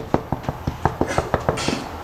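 Rapid, vigorous knocking on a door, about six knocks a second, stopping about a second and a half in.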